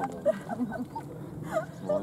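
Short, scattered bird calls, one gliding down in pitch near the end.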